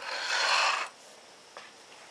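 A brief rustling scrape of hands handling things, under a second long, then a faint click.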